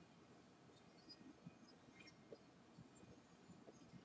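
Near silence with faint, scattered small ticks and pops as a tobacco pipe is puffed, drawing smoke.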